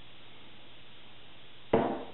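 A single sharp clack of a hard object set down on a hard surface, about three-quarters of the way through, ringing out briefly over a faint steady hiss.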